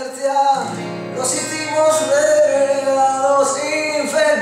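A man singing a rock song over guitar. A low chord comes in about half a second in and rings on under the voice.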